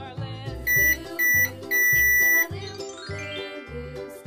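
Toy microwave oven beeping: two short high electronic beeps and then one longer one, its finished signal, over children's background music. A rising sweep follows in the music.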